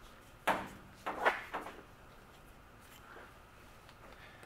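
Plastic water hose adapter and garden hose being handled: a few short knocks and scrapes in the first two seconds.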